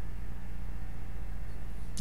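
Steady low hum with a light hiss above it, unchanging throughout, with no speech.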